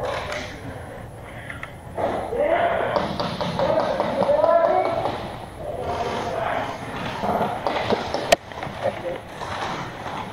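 People talking and calling out, not close to the microphone, with one sharp click about eight seconds in.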